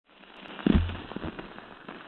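A dull thump about two-thirds of a second in, followed by a few light clicks and knocks over a steady hiss.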